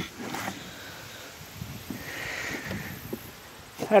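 A cardboard box being handled and closed by hand: a few faint knocks, then a soft rustle about two seconds in, over low outdoor background noise.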